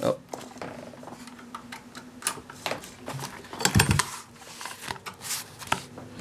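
Scattered clicks, knocks and vinyl rustling as the heavy vinyl is pulled out from under the presser foot of a Pfaff 30 sewing machine, with one louder knock about four seconds in. The machine has stopped on a thread jam: the threads were not held at the start and shredded under the needle plate.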